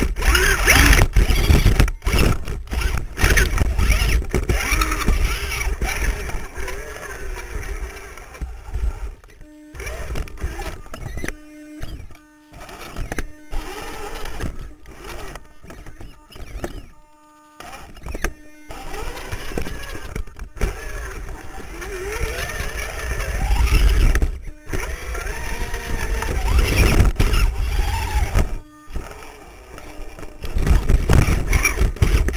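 Onboard sound of an RC rock crawler with dual 35-turn brushed electric motors working over rock: motor and gear whine that starts and stops and rises and falls with the throttle, with repeated knocks and scrapes of the chassis and tyres on the rocks and heavy rumble on the camera.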